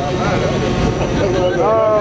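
Crowd of people talking and laughing over a steady low rumble, with one voice rising near the end.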